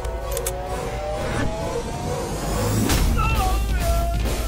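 Action-film soundtrack: background score with a heavy low drone under a slowly rising tone. A sharp hit comes about three seconds in, followed by wavering high tones.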